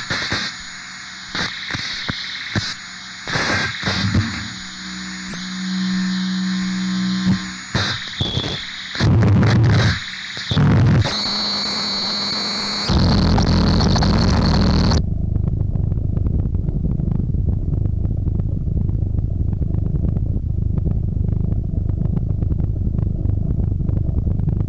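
Harsh industrial noise music. It starts as chopped, distorted bursts of noise and static, and about halfway through it settles into a dense, low, distorted rumble.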